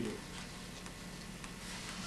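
Quiet room tone: a low steady hum with a few faint ticks.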